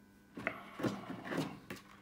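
Several soft knocks and rubs from a clear plastic vending-machine globe being picked up and handled.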